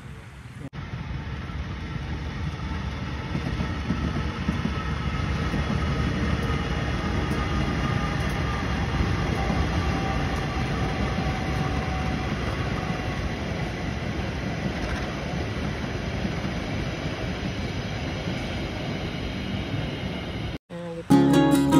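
KAI diesel-electric locomotive hauling passenger coaches past, the rumble of its engine and wheels on the rails growing louder over the first few seconds, then fading slowly.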